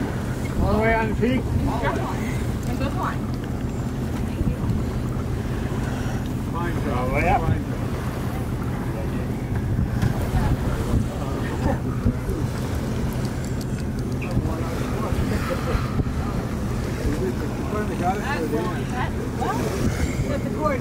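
Wind on the microphone and water along the hull of a schooner under sail, a steady low rumble, with brief indistinct voices now and then.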